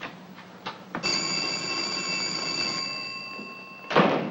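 A 1940s desk telephone bell rings once, long and steady, for about three seconds, fading slightly as it goes. A sharp knock comes at the very end.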